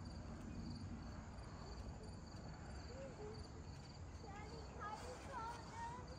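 Faint, steady pulsing chirps of crickets.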